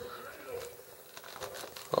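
Plastic and cardboard toy packaging crinkling faintly, with quiet film dialogue in the background.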